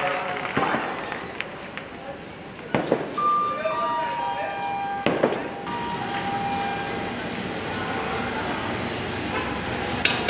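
Railway station background noise: a steady hubbub with distant voices, a few sharp knocks and clanks, and several held tones near the middle.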